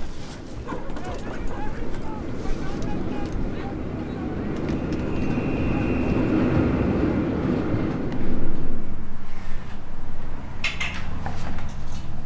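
Low rumble of a train in motion, swelling through the middle, with a few sharp clicks near the end.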